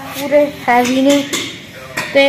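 Chrome handlebar bicycle bell on a new bicycle being rung, giving a few short bursts of metallic ringing.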